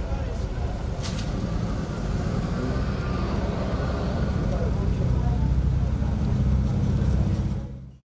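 A motor running with a steady low hum, under people talking in the background. The sound fades out just before the end.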